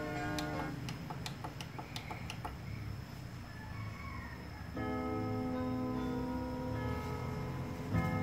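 Music from a test CD on a Denon DCD-720AE CD player stops about a second in, followed by a quick run of about seven sharp clicks as the player skips ahead from track 1 to track 7. After a quieter gap, the new track starts near the five-second mark with long, steady ringing tones.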